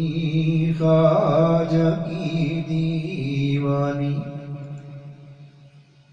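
A man chanting a Sufi devotional refrain in long held notes that change pitch about once a second. The chant fades away over the last two seconds.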